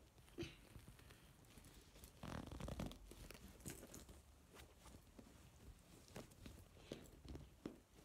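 Faint rustling and handling noises with scattered small clicks, and a longer, louder rustle a little over two seconds in.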